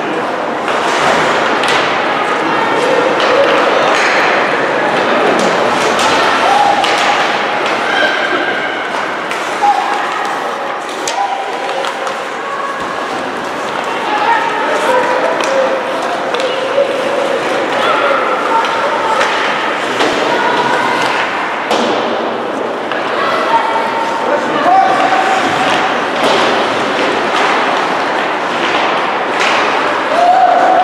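Ice hockey game in an echoing indoor rink: spectators calling out and chattering indistinctly, with repeated thuds and slams of the puck and sticks against the boards.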